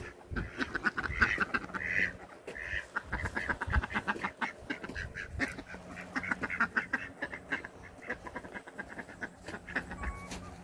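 Poultry calling: a long run of quick, repeated clucks and chatter, with a few longer calls in the first three seconds.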